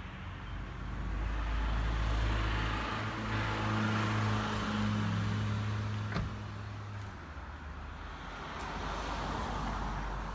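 A car running with a low, steady engine hum that fades out about seven seconds in. A single sharp knock about six seconds in is a car door being shut.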